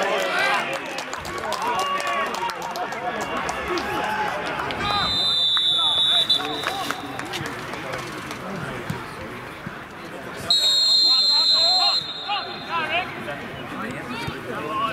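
Referee's whistle blown twice: a blast of about a second some five seconds in, then a longer, louder one about ten and a half seconds in, over players and spectators calling out across the pitch.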